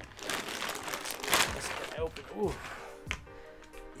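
Plastic packaging crinkling as it is handled and opened, loudest about a second and a half in. Background music plays underneath.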